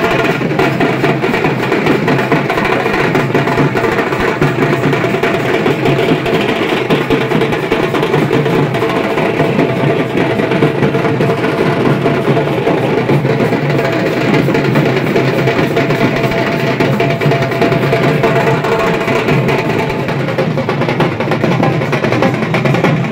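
Several dhaks, large Bengali barrel drums, beaten with thin sticks together in a dense, fast, continuous rhythm at a steady loud level.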